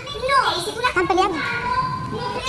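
Women's raised, high-pitched voices in a heated argument.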